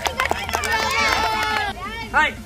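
Children's voices calling out together in one long, high shout, with a few sharp claps in the first half-second.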